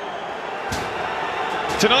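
Football stadium crowd noise from a TV match broadcast, a steady even din, with a single sharp thud about three quarters of a second in. A commentator's voice comes in near the end.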